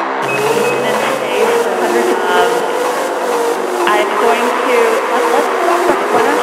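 Minimal techno track: a tone wavering slowly up and down over a steady, fast ticking in the highs.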